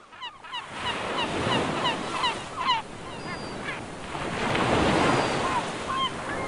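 Sea surf washing, with a flock of birds giving many short, quick cries over it, thickest in the first few seconds and thinning after. The surf swells loudest about four to five seconds in.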